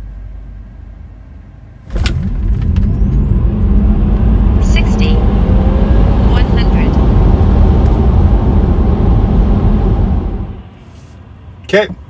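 Tesla Model 3 Performance launching hard from a standstill, heard from inside the cabin: about two seconds in, a sudden loud surge of road and tyre noise begins, with a faint rising electric motor whine. It lasts about eight seconds, then drops away.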